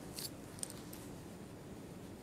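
Quiet room tone with one brief hissy rustle about a quarter second in, followed by a single sharp click.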